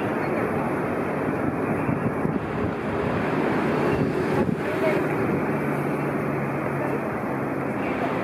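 Busy city intersection traffic: a steady mix of bus and car engines and tyre noise.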